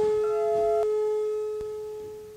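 Ambient experimental electronic music: one low, pure tone is held throughout, with fainter higher tones above it and a brief higher tone that cuts off about a second in, the whole slowly fading.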